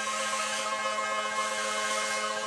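Hand-held power sanders running steadily on 3D-printed surfboards: a constant whirring hum with a hiss over it.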